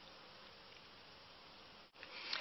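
Near silence: faint steady room tone hiss, with a brief dropout near the end.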